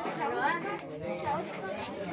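Several people talking at once in casual conversation.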